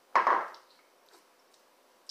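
Heavy glass beer mug clunking once on a stone countertop, followed by a few faint small ticks.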